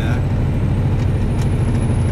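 Semi truck's diesel engine running steadily at road speed, heard from inside the cab along with road noise.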